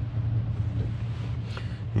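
A steady low hum with a faint even background hiss.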